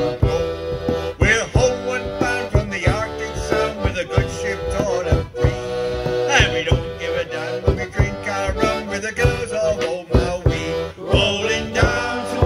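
Folk band playing the instrumental opening of a sea shanty: accordion carrying the melody over a steady beat on a bodhrán struck with a tipper.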